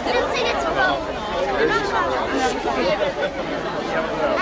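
Chatter of many voices talking at once, children's voices among them, with no single speaker standing out.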